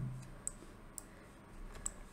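Computer mouse clicking: three short, sharp clicks within about two seconds, over faint room noise.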